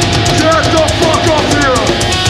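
Heavy metal band playing live at full volume: fast, even drum hits about eight a second over distorted guitars and bass, with a run of short, falling, gliding notes over the top from about half a second in.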